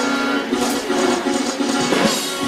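Sixties-style pop band playing: a drum beat under a repeating mid-range melody line, with no bass in this passage.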